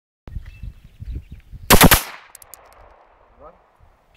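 Pistol fired in a rapid string of about four shots within half a second, about two seconds in, followed by an echo trailing off.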